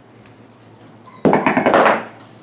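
A plastic dog-training dumbbell dropped onto a hardwood floor: a sudden loud clatter with several quick bounces, starting just past a second in and lasting most of a second.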